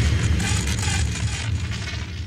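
The dying tail of a dramatic logo-sting sound effect: a deep bass boom ringing on and slowly fading out.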